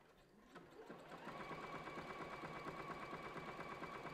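Juki sewing machine stitching a zigzag on felt: it starts up about half a second in and then runs steadily at speed with a fast, even stitch rhythm.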